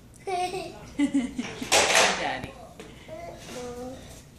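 Young children's short wordless vocal sounds, with a loud burst of rushing noise lasting about half a second, about two seconds in.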